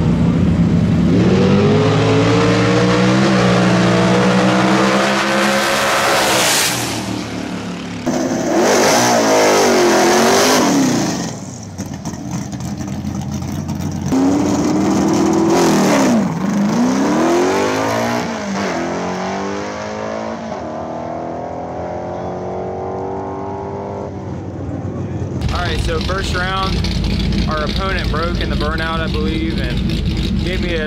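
Drag race cars launching and accelerating hard down the strip, engine pitch climbing steadily over the first several seconds, then further runs cut together in which the engine note swoops down and back up as the cars pass. The last few seconds change to a different, rumbling sound with voices.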